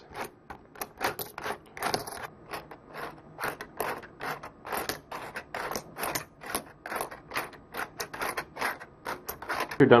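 Coins and 3D-printed plastic parts of a coin sorter clicking and rattling as the top piece is spun by hand, coins tumbling and dropping through their size holes into the sleeves. A quick, irregular run of sharp clicks, about four or five a second.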